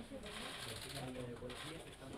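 Faint, low bird calls made of short held notes, with murmured voices in the background.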